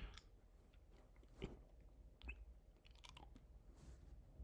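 Near silence, broken by a few faint, scattered clicks.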